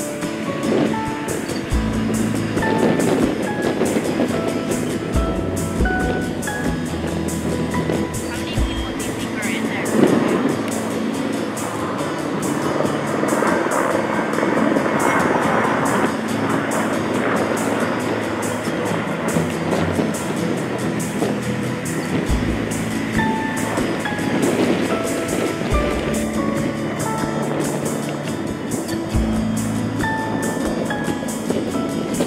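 Background music, a melody of short held notes, over a steady rushing noise.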